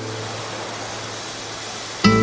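A steady, hiss-like rushing noise without any clear pitch, slowly getting quieter, in a gap between two pieces of guitar music.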